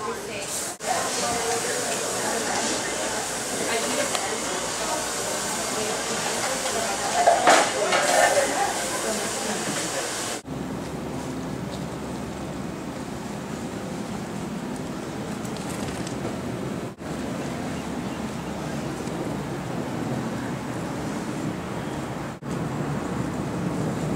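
Hand-held hair blow dryer running with a steady rushing hiss. About ten seconds in, the sound changes abruptly to a lower, duller rush.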